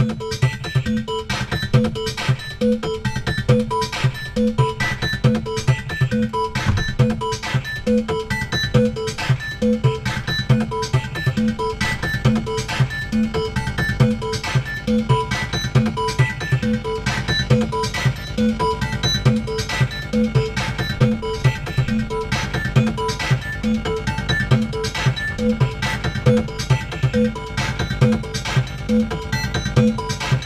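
Electronic music played live on hardware synthesizers and drum machines: a repeating line of short, plucked-sounding notes over a steady beat.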